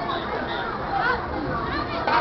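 Chatter of many spectators' voices, children's among them, with no music playing.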